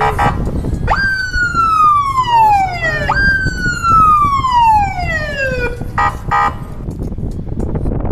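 Vehicle siren on a moving convoy sounding two long wails, each a sharp rise followed by a slow falling glide, with a rapid pulsing yelp near the start and again briefly about six seconds in, over a steady low rumble.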